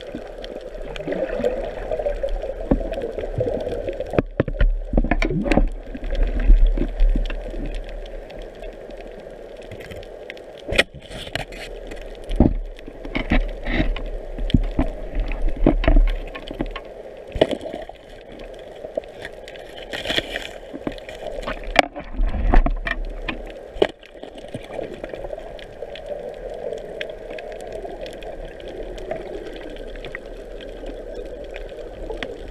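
Underwater water noise heard through a diving camera: a steady muffled rush of moving water with many scattered clicks and knocks. It grows louder and rougher a few seconds in and again about two-thirds of the way through.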